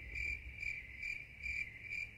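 Cricket chirping, a thin high pulsing trill repeating about twice a second over otherwise dead-quiet sound: the stock sound effect used for an awkward silence.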